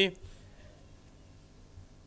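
A man's voice breaks off just after the start, leaving a pause of quiet room tone in a small hall.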